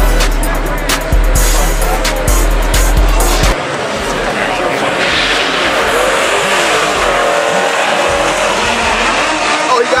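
Hip hop music with a heavy bass beat for about the first three and a half seconds, then it cuts off abruptly. The rest is the live sound of drag-race cars launching and running down the strip at full throttle, with tires squealing and spectators shouting.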